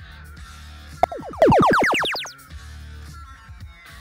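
Arena game sound effect for a power-up being played, a loud video-game-style rising sweep of tones about a second in that fades out over about a second, marking the blue alliance playing its boost power-up. Background arena music continues underneath.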